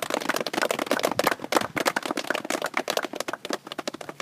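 A small group of people clapping their hands, with individual claps heard separately.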